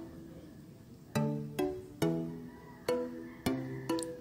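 Background music of light plucked-string notes, played one at a time with short gaps, starting about a second in.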